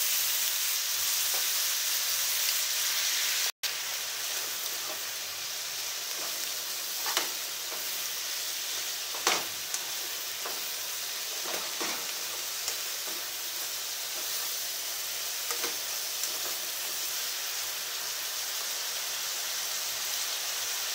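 Chicken and bean-sprout vegetable stir-fry sizzling steadily in a frying pan, with a spatula knocking and scraping against the pan now and then as it is stirred. The sound drops out for an instant about three and a half seconds in.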